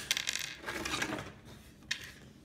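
Plastic Lego pieces clicking and clattering as hands handle and shift them, with a sharp click at the start, a quick run of small clicks over the first second or so, and another click near the end.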